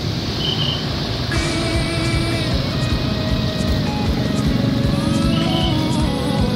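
Road traffic with motorcycles passing, the steady noise of engines and tyres. Background music comes in sharply about a second and a half in and plays over the traffic.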